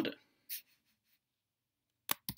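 Near silence: the tail of a spoken word ends at the start, followed by one brief soft hiss about half a second in, then nothing.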